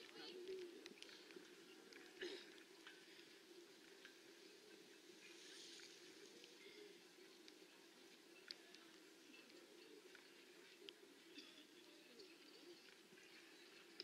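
Near silence: faint arena background with a low murmur of distant voices and a few soft, isolated clicks.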